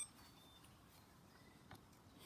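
Near silence: faint outdoor background, with one faint click near the end.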